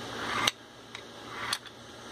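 A CNC-milled steel bolt sliding in a Ruger 10/22 receiver. Twice a rising metal-on-metal slide ends in a sharp click, about half a second in and about a second and a half in, with a lighter click between.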